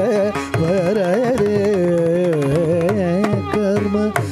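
Carnatic male vocal singing a melodic line with quick oscillating gamakas that settle into a steadier held note partway through. Mridangam strokes sound underneath.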